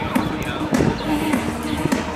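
Recorded music playing over the sound system for the dog show, with a voice and a beat in it.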